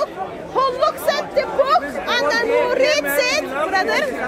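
Speech only: people talking, with voices at times overlapping.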